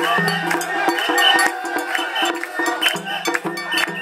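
Portable shrine (mikoshi) being carried and bounced: its metal fittings and rings clink and jangle over the voices of the crowd of bearers.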